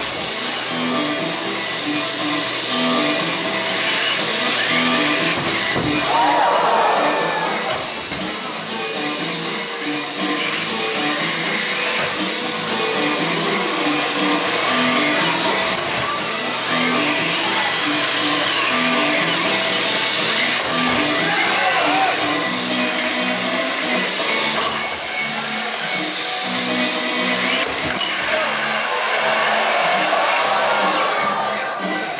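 Electric motors of small combat robots whining and rising and falling in pitch as they drive and push, over background music with a steady beat and crowd chatter.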